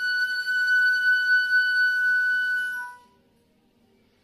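Concert flute holding one long high note, which drops briefly to a lower note and stops about three seconds in.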